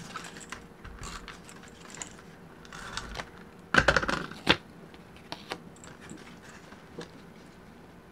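Paper and card being handled and pressed onto a junk journal page: light taps, clicks and rustles, with a louder burst of paper rustling about four seconds in.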